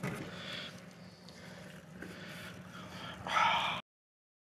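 Faint, muffled voices and handling noise over a steady low hum, with a louder burst just before the sound cuts off abruptly near the end.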